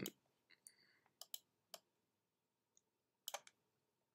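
Faint, scattered clicks of a computer mouse, a few spread out and then a quick cluster of about three, as keyframes are picked and dragged in Blender's timeline.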